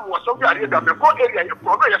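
Speech: a person talking continuously.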